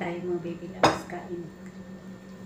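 A metal fork clinks once against a ceramic plate about a second in, leaving a short ringing tone; the ringing of a similar clink just before fades at the start. A steady low hum runs underneath.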